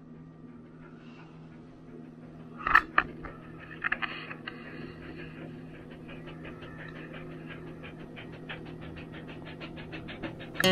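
Siberian husky panting rapidly, about four breaths a second, with a brief louder noise about three seconds in. The panting is that of a bitch in the first stage of labour.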